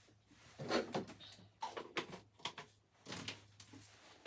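Drawers of a dresser being opened and their contents rummaged through: a series of soft knocks and clatters, the loudest about a second in.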